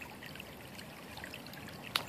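Stream water trickling steadily, with one sharp click near the end.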